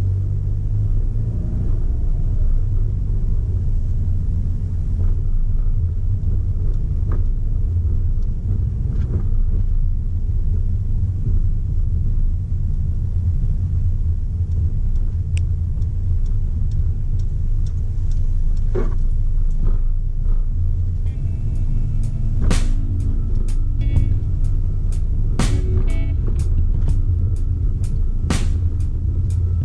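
Steady low road and engine rumble of a car driving on a city street, heard from inside the cabin. About three quarters of the way through, background music with a quick run of plucked notes comes in over it.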